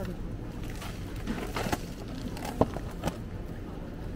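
A steady low background hum with a few short knocks and rustles from a cardboard box being picked up and handled.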